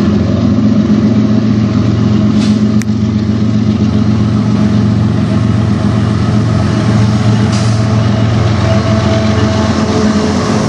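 Two CN diesel freight locomotives running as they approach and come alongside, a steady low engine drone.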